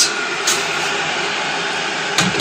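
Steady rushing noise with a light knock about half a second in.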